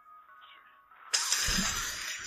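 A man blowing his nose hard into a tissue: a loud rushing blast starting about a second in, over faint background music.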